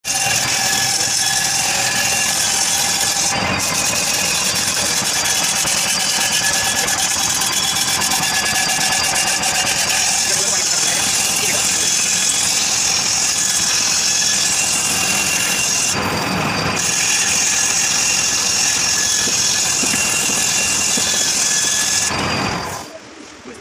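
Motor-driven wood lathe running while a hand chisel cuts into a spinning log, a loud steady hiss of wood being shaved over the hum of the motor. The cutting hiss briefly drops away twice, about three seconds in and again around sixteen seconds.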